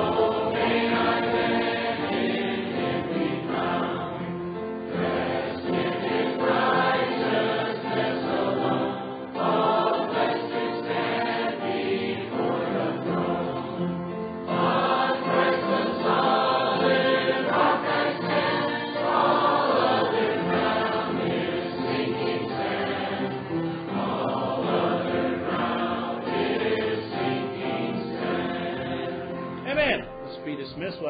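A group of voices singing a hymn together in harmony, in phrases a few seconds long.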